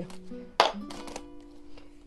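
Background acoustic guitar music with steady held notes. About half a second in, one sharp knock stands out as the loudest sound, followed by a few faint ticks.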